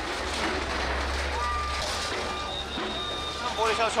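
A backhoe loader's diesel engine runs with a steady low rumble during roadside demolition, easing off about three seconds in. A reversing alarm beeps a few times in the middle.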